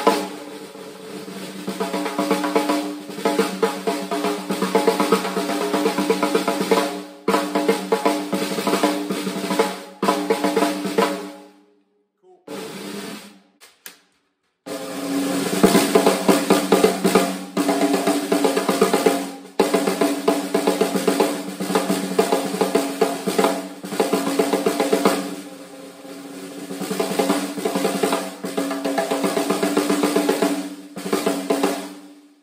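Solo snare drum played with sticks in fast strokes and rolls, with the ring of the shell and heads under them, close-miked. First a DDrum 6.5x14 hammered bronze snare; after a short silence about 12 seconds in, a Ludwig 6.5x14 Supraphonic chrome-plated aluminium snare, both fitted with Remo Emperor X heads and wide snare wires.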